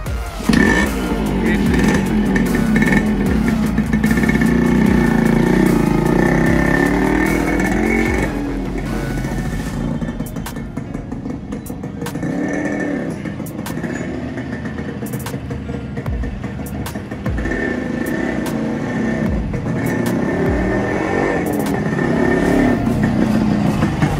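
Yamaha RX100's two-stroke single-cylinder engine revving as the motorcycle pulls away, its pitch rising and falling. It fades as the bike rides off and grows louder again as it comes back near the end. Background music plays underneath.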